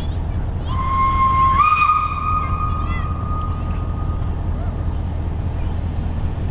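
Steam locomotive SJ E 979's whistle sounding one long blast. It starts about a second in, steps up slightly in pitch as it opens fully, and fades out after a few seconds, over a steady low rumble and hiss of venting steam.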